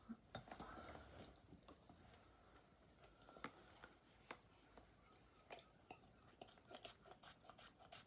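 Near silence with faint, scattered clicks and rustles of small objects being picked up and handled, coming more often near the end.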